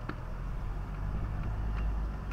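Low, steady engine hum from the small vehicle the recording is made from, idling, with one click right at the start.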